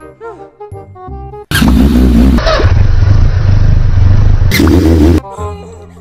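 Background music, cut into about a second and a half in by a loud, deep, noisy sound effect that lasts about four seconds. The music returns near the end.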